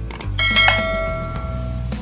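Subscribe-button animation sound effect: a quick click, then a bright notification bell ding that rings on for about a second and a half.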